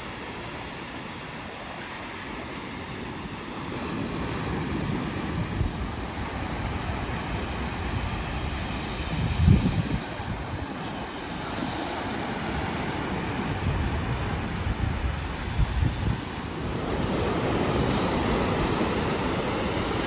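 Sea surf breaking and washing up a sandy beach, getting louder near the end as the water's edge comes close. Low gusts of wind buffet the microphone now and then, the strongest about halfway through.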